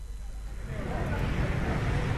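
Road traffic ambience from a city street, a rumbling noise that swells from about a third of the way in, picked up by an outdoor live microphone, with faint voices underneath.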